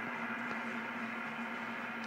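A steady low hum with a faint hiss under it, with no distinct events.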